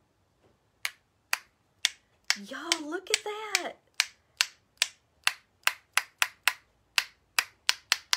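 Repeated sharp taps of a stick against a paint-loaded paintbrush, flicking spatters of white paint: sparse at first, then quickening to about three or four taps a second from about halfway through. A short wordless vocal sound comes about two and a half seconds in.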